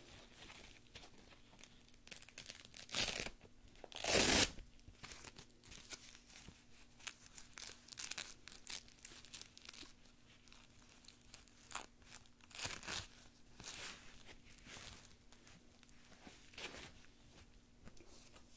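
Hook-and-loop straps of a heavy-duty leg stabilizer brace being pulled open and pressed shut: a series of tearing sounds, the loudest about four seconds in, with fabric rustling between them.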